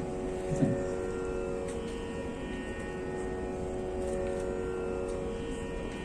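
A steady, drone-like musical tone rich in overtones, held without change.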